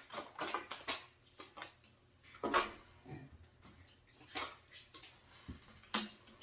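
Tarot cards being handled: a quick run of faint flicks as the deck is shuffled, then a few soft slides, and a light knock near the end as a card is laid down on the table.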